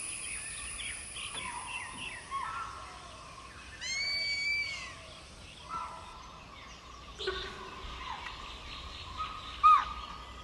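Forest ambience with assorted bird calls over a low, even background. There are short curving calls throughout, a run of repeated arched calls about four seconds in, and a louder short call near the end.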